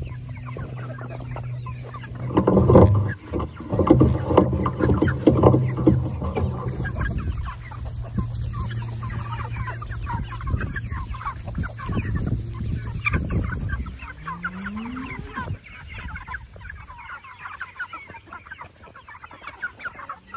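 A large flock of Cornish Cross meat chickens and hens clucking and calling all around, loudest in the first few seconds. The flock is hungry and crowding close. A low steady hum runs under the calls until about 14 s in.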